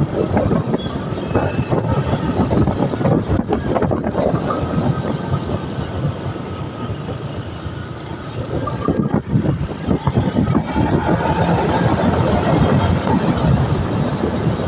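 On-board sound of a motorcycle being ridden along a road: a steady rumble of engine, tyre and wind noise on the microphone, easing a little midway and building again towards the end.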